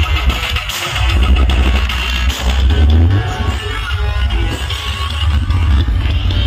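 Loud music with a heavy, booming bass and guitar, played through a truck-mounted 'horeg' speaker stack.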